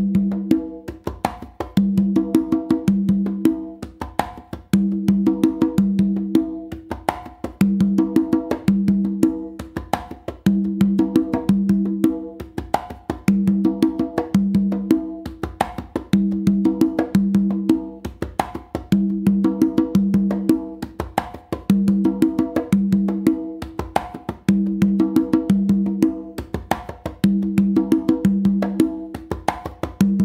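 Three Meinl congas played with bare hands in a salsa tumbao: quick heel-toe and finger taps, sharp slaps and ringing open tones on two pitches, the phrase repeating about every three seconds. The player alternates between two opens and three opens on the low drum.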